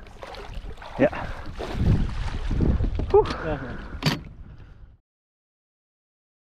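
A hooked pike splashing at the surface beside the boat, with wind rumbling on the microphone and a sharp knock near four seconds in; the sound cuts off suddenly about five seconds in.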